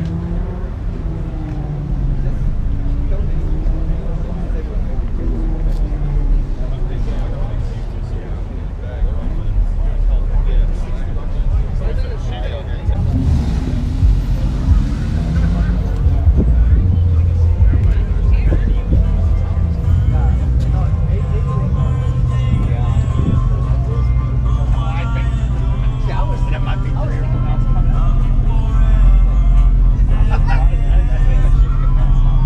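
Indistinct crowd chatter and outdoor background noise, with music that becomes more prominent in the latter part.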